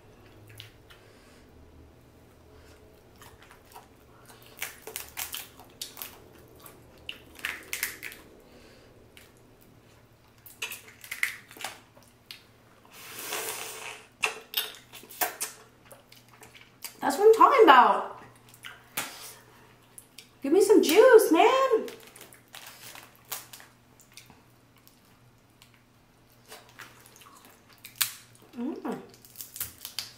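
Close-miked boiled crawfish being peeled by hand: a run of sharp shell cracks and snaps with wet squishing, and a longer wet sucking sound about 13 seconds in. Twice in the middle, and briefly near the end, a drawn-out hummed "mmm" of enjoyment.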